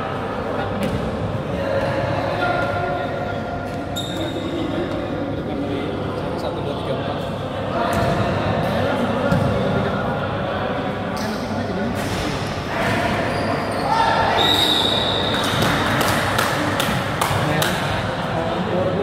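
Basketball bouncing on a hard indoor court amid players' voices, echoing around a large sports hall, with a quick run of sharp knocks near the end.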